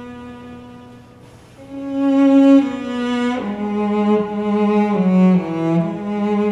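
Cello playing a slow melody with long bowed notes. A held note fades away over the first second, there is a brief lull, then the cello comes back louder and steps down into a lower register from about three and a half seconds in.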